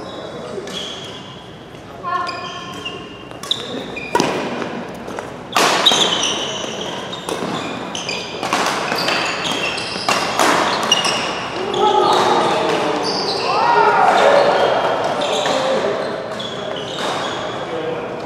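Doubles badminton rally: rackets striking a shuttlecock again and again in sharp cracks, with court shoes squeaking in short high chirps on the synthetic court mat, echoing in a large hall.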